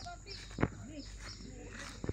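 Faint animal calls, short and bending in pitch, with one sharp tap about half a second in.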